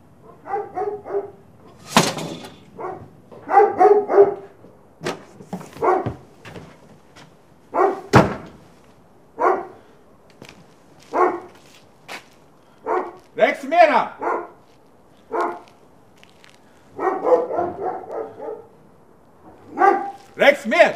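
A dog barking repeatedly in short bursts, one every second or two, with a couple of sharp knocks in among them.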